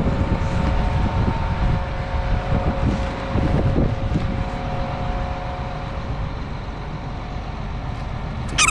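John Deere tractor running steadily with a constant whine, under a fluttering rumble of wind on the microphone; the whine fades out near the end.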